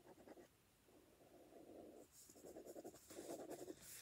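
Faint scratching of a pen being drawn across a spiral sketchpad's paper, coming in about four short strokes with pauses between them.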